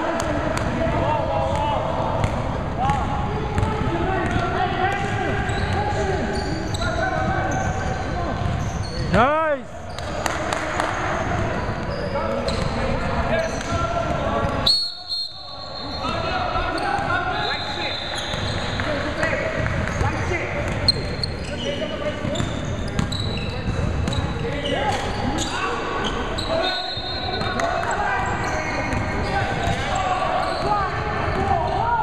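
Basketballs bouncing on a hardwood gym floor amid indistinct voices of players and onlookers, echoing in a large hall. The sound drops out briefly twice, about nine and fifteen seconds in.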